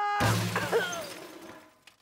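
Cartoon sound effect of a ball crashing into aluminium garbage cans: a sudden clattering crash just after the start that dies away over about a second and a half.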